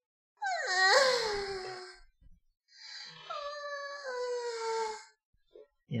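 A man's high-pitched, breathy groan made while stretching, twice: a first 'ahh' about a second and a half long that falls in pitch, then a longer one that slowly sinks.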